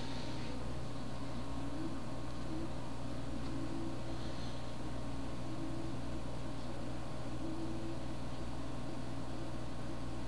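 Steady low hum with a faint hiss: background noise of running equipment in a small room.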